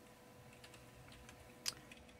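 Faint computer keyboard typing: a few soft, scattered keystrokes, then one sharper key click near the end.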